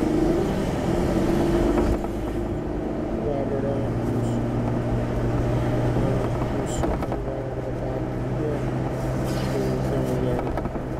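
Car driving, heard from inside the cabin: road and engine noise, with a steady low hum setting in about four seconds in.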